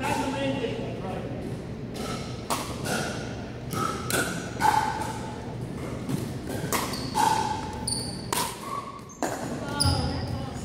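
Pickleball paddles striking a hard plastic ball in a rally, a series of sharp pops with ball bounces on the hardwood floor, echoing in the gym.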